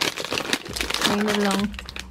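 Crinkling of a thin plastic wrapper being opened and pulled off a small toy figure, with a short held vocal note partway through.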